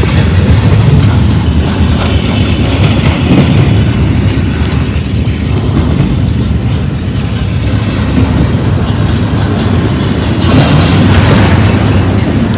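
Double-stack container train rolling past at close range: a steady low rumble of steel wheels on rail with clacking from the well cars, growing harsher near the end.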